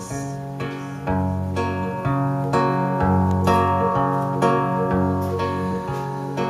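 Acoustic guitar strummed in an instrumental passage of a live song, strokes about every half second, over held low notes that change pitch about once a second.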